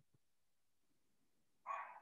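Near silence on the call, broken near the end by one short sound lasting about a third of a second.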